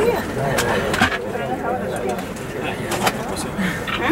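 Several people's voices chatting, partly overlapping, too indistinct for words, with a few short clicks.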